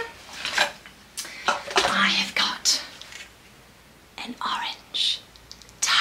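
Hands rummaging in a felt bag, with small wooden toys knocking and clacking against each other in short scattered clicks, and a few soft murmured or breathy voice sounds in between.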